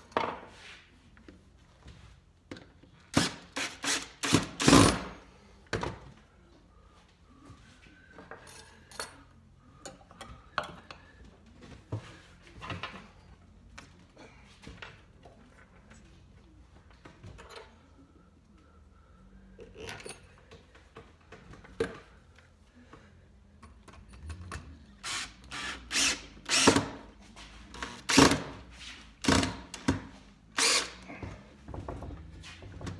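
Cordless drill/driver run in short trigger bursts, driving screws through washers into a honeycomb solid scooter tire: a cluster of bursts about three seconds in and another near the end, with small knocks of handling between.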